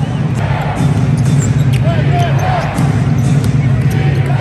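Bass-heavy arena music from the PA system kicks in suddenly and pulses on, over a basketball being dribbled on the hardwood court.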